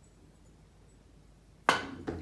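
Quiet room tone, then near the end a single sharp click as a pool cue tip strikes the cue ball, with a brief ring after it.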